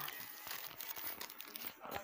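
Paper crinkling and rustling in a run of small crackles as paper cutout figures are handled.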